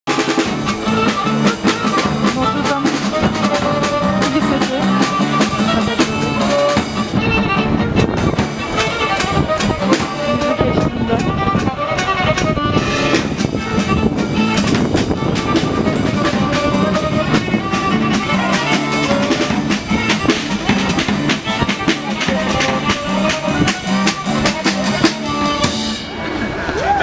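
Live street band playing: a drum kit keeps a steady beat with snare and bass drum under a violin melody, with a guitar alongside.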